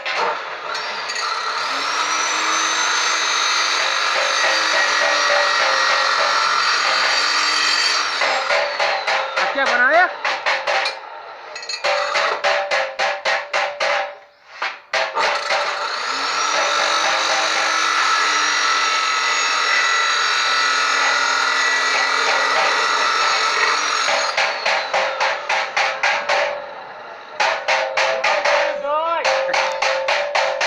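Bosch abrasive chop saw cutting steel sections: two long cuts, each with the motor whine rising as the disc spins up and falling away at the end. Between the cuts come stretches of rapid, evenly spaced clattering.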